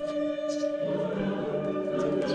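Choral music: voices holding sustained chords, moving to a new chord about a second in.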